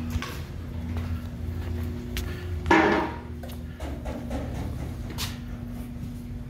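Steady low hum of shop ventilation, with a few scattered knocks and one louder clatter a little before halfway.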